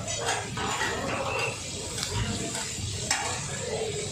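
Fish frying in shallow oil on a flat steel griddle, sizzling, while a metal spatula scoops and splashes hot oil over the pieces, with scrapes and clicks of the spatula on the griddle and a sharp knock about three seconds in.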